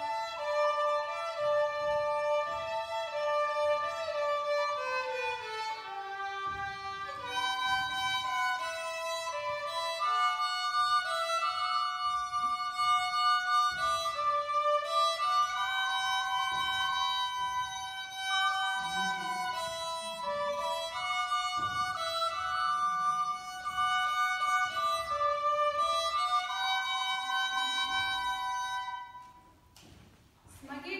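Solo violin played with the bow: a melody of held and stepping notes that stops about a second before the end.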